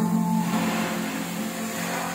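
Acoustic guitar strummed, its low chord tones ringing steadily, with a man's sung note trailing off in the first half-second.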